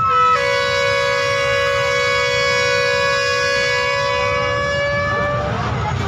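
A horn sounds one long, loud blast of about five seconds, preceded by a brief higher toot. Its pitch lifts slightly just before it cuts off.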